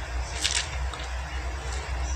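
A pause between spoken phrases: a steady low hum runs under the recording, with one short soft breath noise about half a second in.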